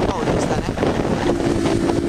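Wind rushing over the microphone with engine and road noise from a motorcycle riding in traffic. About a second in, a steady horn-like tone starts and holds.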